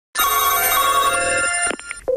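A telephone ring: one ring of about a second and a half that stops suddenly.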